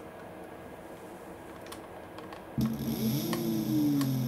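Electric scooter hub motor, driven by a Kelly KBS72151E controller, starts spinning about two and a half seconds in with a whine that rises in pitch as the throttle opens, running smooth. It now turns the right way after the phase and hall leads were swapped. A few faint clicks come before it starts.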